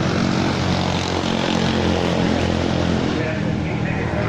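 An engine running steadily at an even pitch, a continuous drone, with people talking around it.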